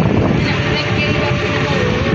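Steady low rumble of a passenger vehicle's engine and road noise, heard from inside its crowded rear compartment.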